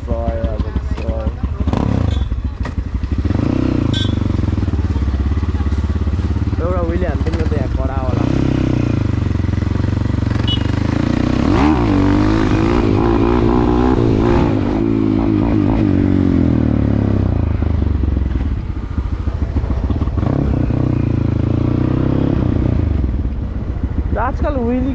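Dirt bike engine running, its revs climbing about halfway through as the bike pulls away, then holding steady while it rides on. Voices are heard over it in the first half.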